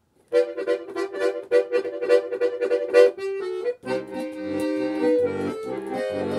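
Button accordion (bayan) playing a run of rapid, short repeated chords for about three seconds, then after a brief break fuller, longer-held chords with the low bass coming in.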